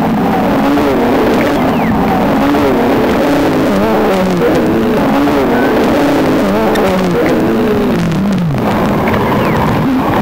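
Electronic improvisation on a Ciat-Lonbarde Cocoquantus 2: layered looped tones that warble and bend up and down in pitch in repeating arcs, with a long falling slide and a brief dip about eight seconds in.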